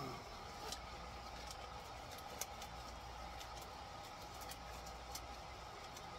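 Faint steady background hum with a few light, scattered clicks and taps from handling small parts.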